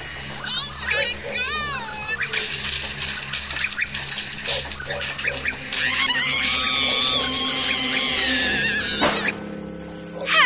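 Horror sound effects: cries and a clatter of crashes and bangs, then one long, high scream held for about three seconds near the end, over a low droning music bed.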